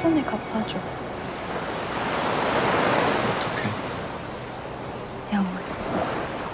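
Ocean waves washing onto a beach. The surf swells to a peak about halfway through and then ebbs.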